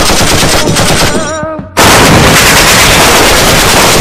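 Loud automatic gunfire in rapid, sustained bursts. It thins out about a second in, where a short wavering pitched sound comes through, then resumes at full loudness just under two seconds in.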